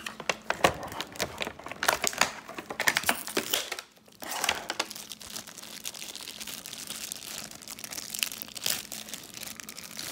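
Clear plastic wrapping crinkling and crackling as it is handled and pulled off a figure and its plastic stand, in quick irregular crackles, with a short lull about four seconds in and quieter crinkling after it.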